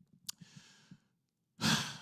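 A man's breath close to a handheld microphone: a small mouth click and a faint breath early on, then a sharp, loud intake of breath near the end, taken just before he speaks again.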